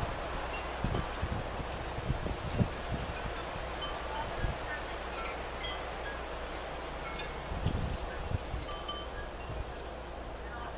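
Wind chimes tinkling now and then, short clear tones at scattered pitches, over a steady breeze. Wind bumps the microphone several times, most strongly near the end.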